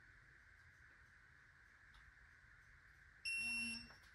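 An electronic torque-angle wrench gives one short, high beep near the end, signalling that the cylinder-head bolt has reached its preset 90-degree tightening angle.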